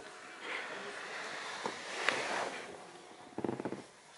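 A chihuahua stirring under a fleece blanket: soft rustling of the fabric and the dog's breathing and snuffling, with a quick run of snuffles near the end.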